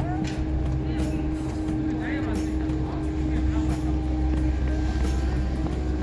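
A steady low hum with a constant droning tone, with a few brief high voice-like chirps about two seconds in.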